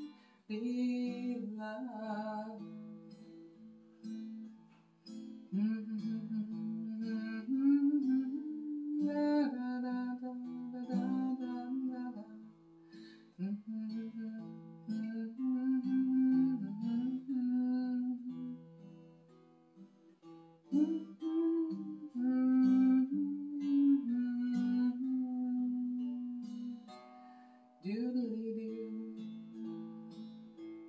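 Acoustic guitar playing an instrumental passage of a slow folk song, picking out chords and melody notes in phrases that swell and fade.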